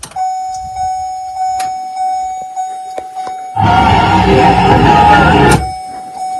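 A car's electronic warning buzzer sounding as one steady high tone through the open driver's door. Around the middle a much louder sound lasting about two seconds covers it.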